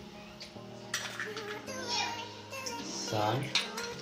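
A spoon clinking against a small bowl as salt is spooned into a pot of potatoes in water, with one sharper click about a second in, over quiet background music.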